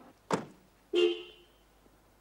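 A car door shuts with a single thud, then about a second in a car horn gives one short toot that fades quickly.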